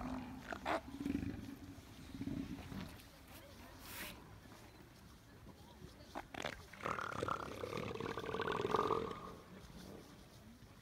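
Seals calling: low grunting calls in the first few seconds, then one long drawn-out call of about two seconds near the end.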